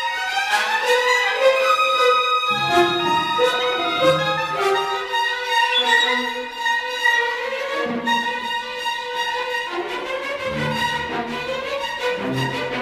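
Symphony orchestra playing a late-1990s symphonic work, the violins prominent in sustained high lines, with lower notes coming in and out in short phrases.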